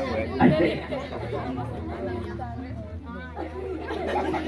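Low background chatter: several voices, adults and children, talking at once with no single clear speaker.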